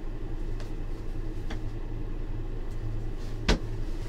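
Steady low background hum with a couple of faint light ticks, then one sharp knock about three and a half seconds in, from a signed jersey being handled close to the microphone.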